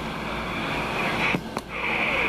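Static hiss from a CB radio receiver between transmissions. About a second and a half in it clicks and drops out briefly as another station keys up, and a steady high-pitched tone comes in.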